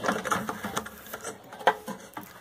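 Irregular clicks and rattles of wires and connectors being handled inside an open inverter's metal case, with one sharp click near the end.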